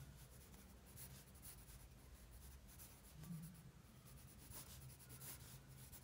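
Faint scratching of a soft 6B graphite pencil on sketchbook paper, in short, irregular sketching strokes, over a low steady room hum.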